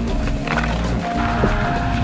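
Wind buffeting the microphone, with background music holding a few steady notes.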